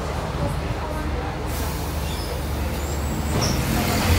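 City bus engine running with road noise, heard from inside the passenger cabin as the bus drives; the rumble grows a little louder near the end.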